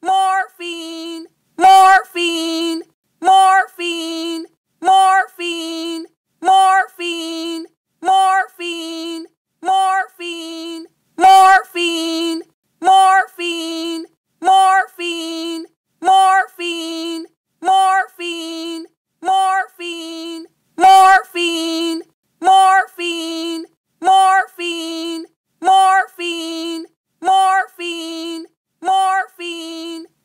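A high-pitched voice yelling "Morphine!" over and over, the same two-syllable shout, first syllable higher, repeated about every second and a half as an identical loop.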